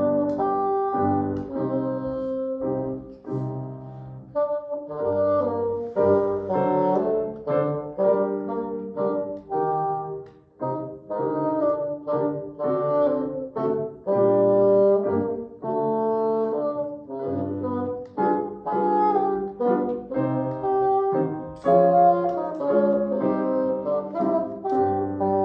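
Bassoon playing a melody of held and moving notes, with grand piano accompaniment.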